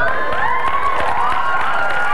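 Congregation cheering and applauding, many voices calling out at once over the clapping.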